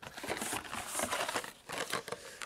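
Blister-carded Hot Wheels cars being pulled out of a cardboard case by hand: plastic blisters and card backs rustling and crinkling against each other, with many small clicks.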